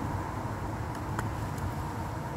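Steady low outdoor rumble of wind and distant background noise, with one faint click a little over a second in.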